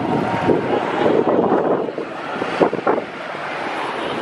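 Wind buffeting the microphone over the running engines of slow-moving vehicles in a convoy.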